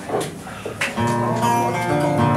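Acoustic guitar starting a gentle, slow song: after a couple of short strokes, a chord is struck about a second in and rings on.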